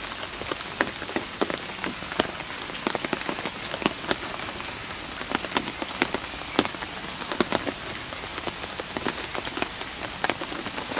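Steady rain falling, with many sharp, irregular drops striking close by.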